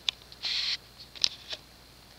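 Small clicks and a short high rustle of handling noise, over a faint steady low hum.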